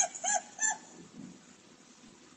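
High-pitched laughter in short, even pulses, about three a second, that stops under a second in.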